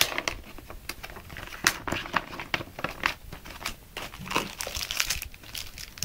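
Paper and plastic packaging rustling and crinkling as it is handled, a run of irregular crackles.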